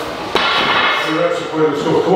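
Bumper plates on a heavily loaded axle bar knock on the floor about a third of a second in as a deadlift rep touches down, followed by the lifter's strained grunting and hard breathing as he pulls again.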